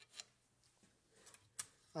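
Quiet room tone with a few faint, short clicks of light handling, the sharpest about one and a half seconds in.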